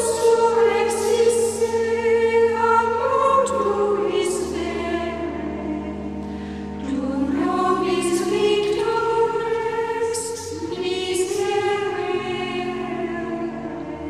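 Choral music: a choir singing long held notes in harmony.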